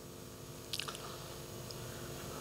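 Quiet pause in speech: faint steady room hum, with one brief soft click, like a mouth click, a little under a second in.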